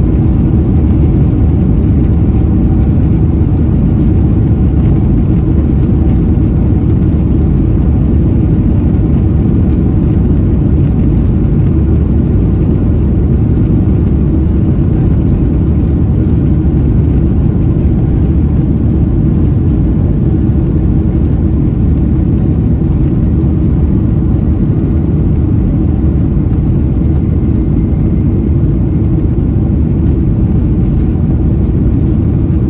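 Cabin noise of a Boeing 747-400, heard from a window seat behind the wing as the jet speeds along the runway for takeoff: a loud, steady, deep rumble of its four Rolls-Royce RB211 turbofans and the wheels on the ground.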